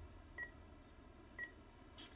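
Bedside patient monitor beeping faintly, two short high beeps about a second apart, over a quiet room.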